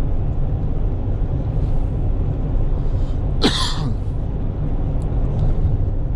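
Steady low engine and road rumble heard from inside the cab of a Fiat Ducato van on the move, with one short cough-like burst about three and a half seconds in.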